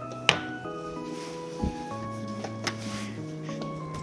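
Background music of slow, held notes. A sharp click comes about a third of a second in, and a short low thump about halfway through.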